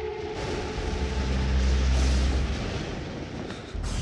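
Thunder rumbling: a long, low roll with a hiss over it, swelling to its loudest about two seconds in and fading toward the end.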